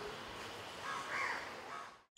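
A single short bird call about a second in, over a steady background hiss.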